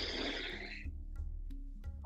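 Soft background music with sustained notes over a steady low pulse. Near the start a long, hissy breath, the release of a held breath after an abdominal lock, fades out over about a second.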